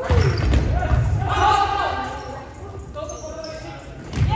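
A volleyball smacked at the net, with a few more ball and floor knocks, and players shouting during the rally, echoing in a large gymnasium.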